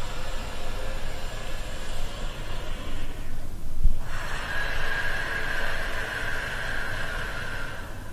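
Deep, slow breathing: a long breath in, a short pause about three and a half seconds in, then a long breath out. These are the slow preparatory breaths taken before a breath-hold.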